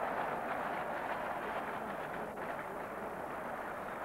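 Cricket crowd applauding and cheering a big hit, a steady wash of noise that eases off slightly.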